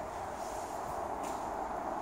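Steady background hiss with a faint constant hum, no distinct events: room tone.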